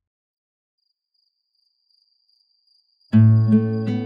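Near silence with a faint high steady tone, then about three seconds in an acoustic guitar starts playing: a plucked chord followed by a couple more notes, in ambient instrumental music.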